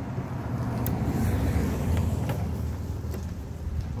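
Low engine rumble of a road vehicle, swelling over the first couple of seconds and then slowly easing off as it passes, with two light metal clicks from clips being hooked on.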